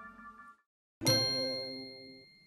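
A single bell-like ding struck about a second in, ringing with several clear tones and fading away over about a second and a half.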